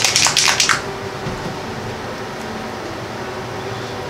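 Citadel flip-top paint pot shaken hard and fast, a quick rattle of strokes that stops under a second in. After it, a steady room hum.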